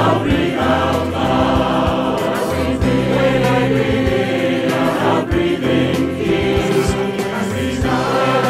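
A choir singing in harmony, with held notes and chord changes every second or so. It is a virtual choir: each singer was recorded separately on headphones and the voices are mixed together.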